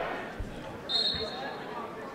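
A basketball bouncing twice on a hardwood gym floor, with a brief high squeak about a second in, over a faint murmur in the gym.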